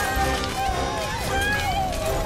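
Cartoon earthquake effect: a steady low rumble as things shake and fall, with several high voices crying out in wavering pitches over it.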